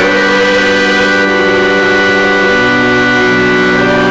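Church organ playing slow, sustained chords, with the chord changing about a second in and again past halfway.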